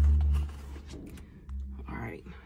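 Low, steady rumble inside a car's cabin. It drops away about half a second in and returns more faintly near the end.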